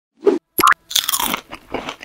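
Cartoon sound effects: two short pops, then a run of crunchy munching, like popcorn being chewed.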